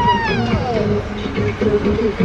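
A single meow-like cry that rises and then falls in pitch, heard over background music.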